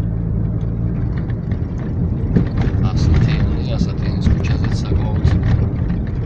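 Car cabin sound while driving: the engine and tyres give a steady low hum. From about two seconds in, a run of short clicks and rattles is heard.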